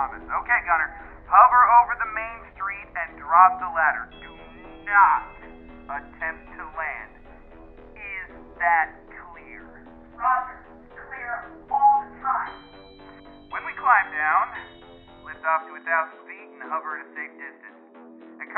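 Voices that sound thin, as if heard through a radio or telephone, over background music with steady held low notes. A low rumble underneath cuts off about fifteen seconds in.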